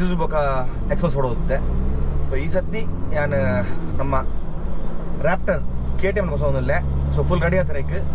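A man talking over the steady low drone of a car's engine and road noise, heard inside the moving car's cabin.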